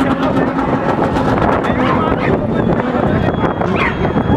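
Car engine running at high revs while the car spins donuts, its rear tyres spinning on the tarmac, with crowd voices mixed in.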